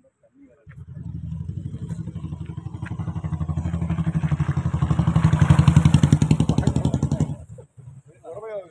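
Small motorcycle engine running with a rapid even pulse, growing steadily louder for several seconds, then cutting off suddenly near the end.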